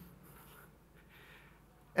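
Faint rustling and shuffling of a seated audience settling back into their chairs, in two soft patches.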